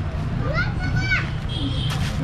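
High-pitched children's voices calling and shouting in short bursts, over a steady low rumble.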